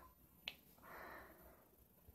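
Near silence, broken by one faint short click a little under half a second in and a soft, brief hiss around one second in.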